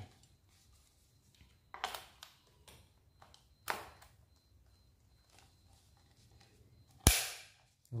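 A brass quick-connect coupler snapping onto a plastic bottle attachment's fitting, locking in place with one sharp, loud click about seven seconds in. A few fainter knocks of the plastic parts being handled come before it.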